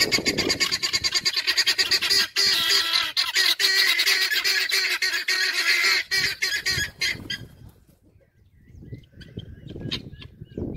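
Helmeted guineafowl giving a rapid, harsh, repeated cackling chatter. It breaks off about seven seconds in, leaving only a few faint calls.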